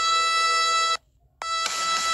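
Male singer's voice holding a single very high sustained note over backing music. The sound cuts out to silence for about half a second just after a second in, then the same note resumes as fuller accompaniment with a beat comes in.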